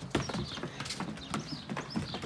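Irregular light knocks and taps of footballs being touched and stopped under the sole, and trainers stepping on patio decking. Birds chirp faintly in the background.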